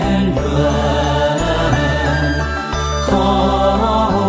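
Chinese Buddhist devotional music: a chanted verse in praise of Guanyin, sung over sustained keyboard chords with a deep bass that changes chord about every second and a half.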